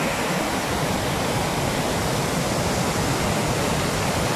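Turbulent brown floodwater rushing and churning below a river barrage, a steady, unbroken rushing noise.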